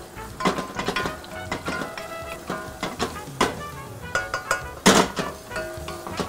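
A wooden spoon stirring chopped onions and garlic in oil in a stainless steel saucepan, knocking against the pan several times, over background music.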